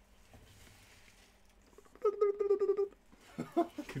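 A person's short, high-pitched vocal sound, held on one pitch with a rapid flutter, lasting just under a second about halfway through. The rest is quiet room tone.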